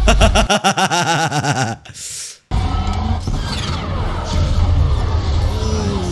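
Men laughing in quick repeated bursts for about two seconds. After a sudden short drop-out, TV soundtrack music plays over a steady low rumble.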